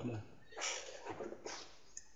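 Domestic cat meowing faintly, a short call about half a second in and a softer one after.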